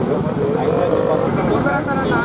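Several men's voices talking over one another, with a steady low background noise underneath.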